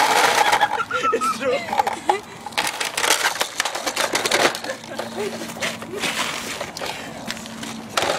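People yelling and laughing after a loud scraping slide across ice in the first second, followed by scattered clicks and knocks from plastic handled close to the microphone.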